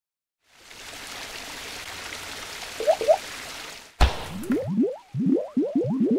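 Animated logo sound effects: a steady hiss for about three seconds with two short rising chirps near its end, then a sharp splat about four seconds in and a quick run of short rising bloops, like liquid drops.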